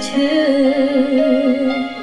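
A young girl singing a held note with vibrato over instrumental accompaniment; the note ends shortly before the end.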